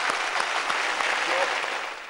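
Studio audience applauding, the clapping fading out near the end.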